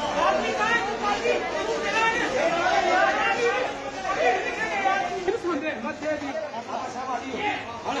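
Several voices talking at once, a steady babble of overlapping chatter with no single clear speaker.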